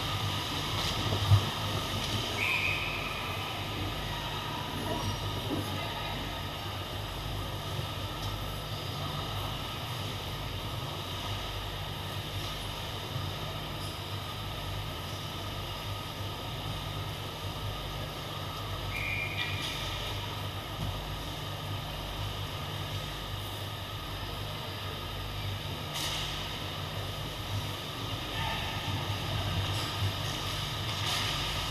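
Ice hockey rink ambience in a large echoing hall: a steady low hum and background din under the skating play, with a sharp knock about a second in, two short high tones near 2.5 s and 19 s, and another brief sharp hit near the end.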